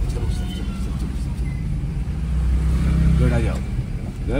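Low, steady engine and road rumble inside the cabin of a Maruti Suzuki A-Star driving slowly, its small three-cylinder petrol engine pulling a little harder in the second half. A brief voice comes in near the end.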